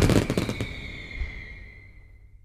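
Fireworks crackling in a rapid volley that thins out within the first second and fades away, with a high ringing tone dying out near the end.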